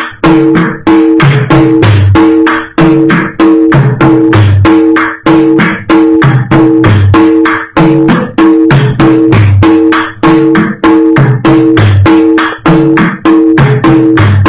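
Tagading, the Batak Toba set of tuned drums, struck with sticks in a fast, steady rhythm of about five strokes a second. The drumheads ring at distinct pitches in a pattern that repeats every second or so.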